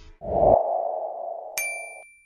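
Video-editing sound effects: a short low thud opening into a steady, fading sonar-like hum, then a bright ringing ding about a second and a half in.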